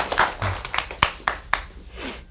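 Studio audience applause dying away, thinning to a few scattered claps by the end.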